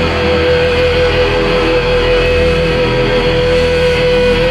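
Live gospel band music with one long note held steadily over the full band.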